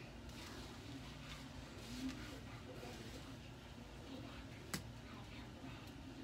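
A television playing faintly in the background, with indistinct voices from a children's cartoon, and a single sharp click about three-quarters of the way through.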